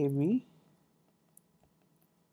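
A spoken word ends in the first half second. Then a stylus makes a few faint clicks against a tablet screen as equations are handwritten, the clearest about a second and a half in.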